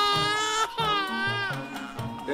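An infant crying in two long wails, the first breaking off about half a second in and the second ending about a second and a half in. Background music with a steady bass beat plays underneath.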